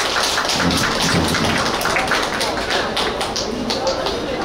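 Applause from a small audience: many irregular hand claps at once, thinning out near the end.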